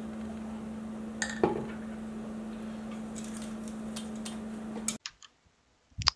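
3D-printed plastic harmonic drive housing handled by hand: two light knocks about a second in and a few faint ticks, over a steady low hum. Near the end the hum cuts off and a few soft computer mouse clicks follow.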